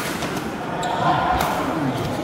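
Badminton rackets striking a shuttlecock during a rally: one sharp hit at the start and a fainter one a little under a second later.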